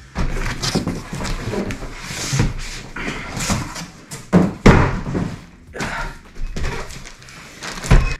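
Large corrugated cardboard boxes being handled: rustling and scraping as a heavy inner box is pulled out of its outer carton. Heavy thumps come about halfway through, and another near the end as the box is set down on a wooden table.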